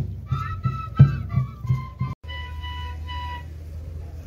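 A flute melody, played in short held notes over low, regular drum beats. The sound cuts out completely for a moment about halfway, then the flute carries on more softly.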